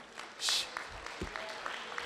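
Audience applauding, the clapping swelling about half a second in, with a short loud hiss near that point.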